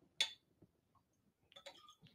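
Glassware clinking: one sharp clink a moment in, then a few faint ticks near the end, as a plastic spoon and a drinking glass touch a glass beaker.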